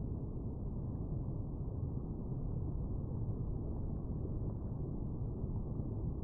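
Steady, muffled low rush of flowing creek water, with the higher sounds cut away.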